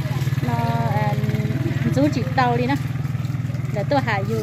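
An engine running steadily at an even pitch, with a person's voice calling out over it.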